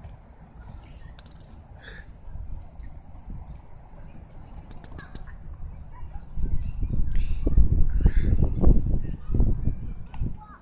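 Outdoor background with faint scattered distant calls. Heavy, uneven low rumbling on the phone's microphone starts about six seconds in and carries on for about three and a half seconds.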